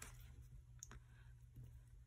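Near silence broken by a few faint clicks as paper sticker sheets are handled and a sticker is pressed onto a planner page.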